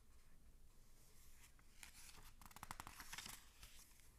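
Near silence, with a brief faint scratchy rustle of a picture book's paper pages being handled a little past halfway.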